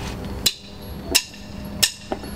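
Wooden drumsticks clicked together three times, evenly about 0.7 s apart: a count-in setting the tempo before the band starts the song.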